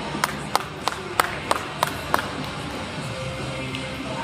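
About seven sharp hand claps, roughly three a second for two seconds, over steady background music.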